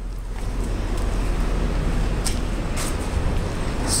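Steady rush of traffic noise and wind in an open parking garage, coming up about half a second in, with two brief hissing scuffs near the middle.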